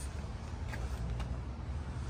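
Faint, steady low rumble of outdoor background noise, with a few light ticks about a second in.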